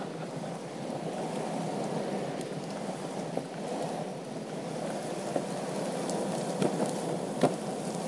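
Meepo V3 electric skateboard's wheels rolling fast on asphalt: a steady, rough rumble with a few sharp clicks scattered through it.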